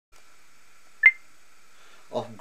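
A single short, high beep about a second in, over a faint steady high-pitched whine.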